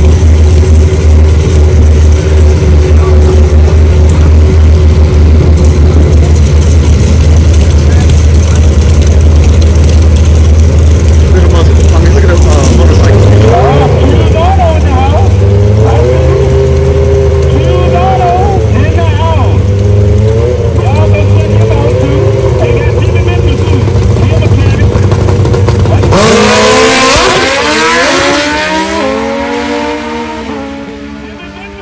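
Two drag-racing motorcycles at the starting line, their engines running with a loud, steady deep rumble, the revs rising and falling over several seconds while staging. About 26 seconds in they launch: a sudden loud burst with the engine pitch climbing in steps through quick gear changes, then fading as the bikes run away down the track.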